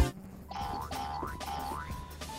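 Synthesized game-show sound effect: a few short rising pitch glides over a held electronic tone, in the style of a video-game power-up.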